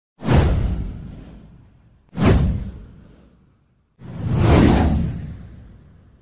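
Three whoosh sound effects of an intro title animation, about two seconds apart, each with a deep low end. The first two hit suddenly and fade away; the third swells up more slowly and fades out.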